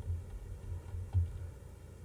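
Faint typing on a computer keyboard: a handful of soft keystroke thuds in the first second and a half as a short command is typed.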